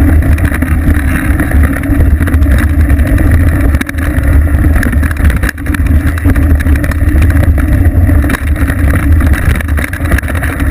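Steady, loud rumble of a Pivot Mach 5.7 Carbon mountain bike rolling over a dirt trail, the vibration carried through a seat-post-mounted action camera, with wind buffeting the microphone. It drops briefly twice, about four and five and a half seconds in.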